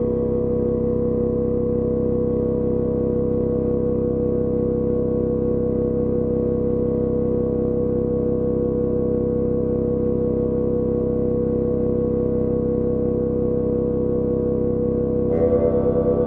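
Dungeon synth music: a dense chord of steady synthesizer tones, held unchanging, with a pulsing layer entering near the end.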